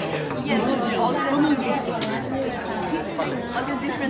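Several voices talking over one another in conversational chatter.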